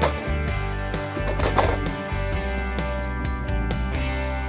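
Folding chairs knocking and clattering against a plywood rack as they are handled into it: a run of sharp knocks, with a rattle about a second and a half in. Steady background guitar music plays under it.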